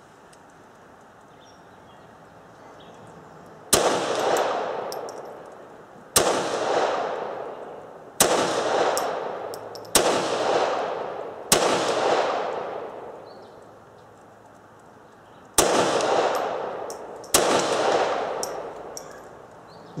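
Seven single shots from a semi-automatic pistol, fired slowly about two seconds apart, with a longer pause before the last two. Each shot is followed by a long echo that dies away over a second or two. The first shot comes about four seconds in.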